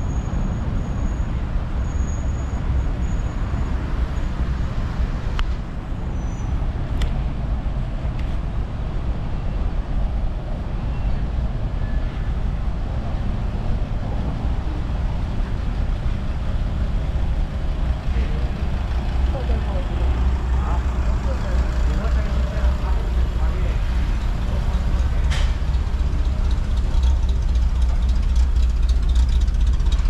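Street traffic noise from buses, trucks and cars running along the road: a steady deep rumble that grows slightly louder in the second half, with a few sharp clicks.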